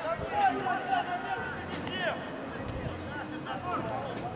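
Distant voices of players calling out across an outdoor football pitch, with scattered short shouts.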